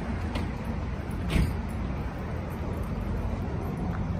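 Steady city street traffic noise, with passing cars. A brief sharp knock about a second and a half in is the loudest sound.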